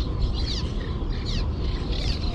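Birds chirping in short, falling calls, twice, over a steady low rumble.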